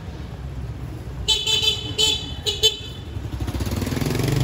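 A vehicle horn honks several short times, starting a little past a second in, over a steady low rumble of engine and traffic noise.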